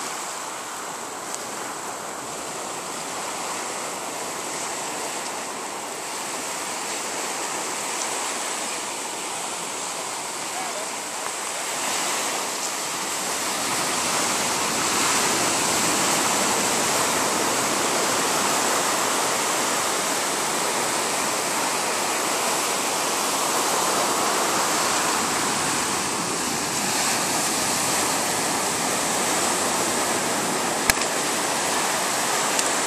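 Small surf breaking and washing up a sandy beach: a steady rush of water that grows louder about twelve seconds in.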